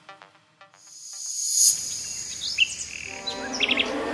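Birds chirping over a steady high trill, a morning ambience that comes in about a second in as the last notes of the title music fade away; a quick run of chirps near the end.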